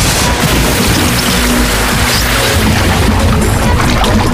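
Loud cartoon soundtrack: action music mixed with crash and impact sound effects.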